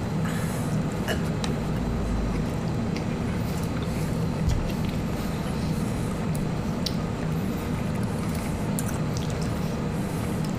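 Quiet eating: faint chewing and small wet mouth clicks of people eating sandwiches, over a steady low room hum.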